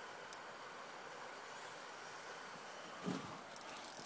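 Faint steady hiss of a river's outdoor ambience, with a tiny click under half a second in, a soft knock about three seconds in and a few light ticks near the end.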